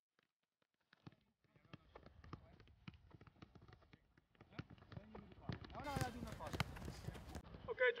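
Soccer balls being tapped and kicked on artificial turf during a dribbling drill: a fast, irregular run of short thuds and knocks from ball touches and footsteps, growing busier after the first second. Voices join in toward the end.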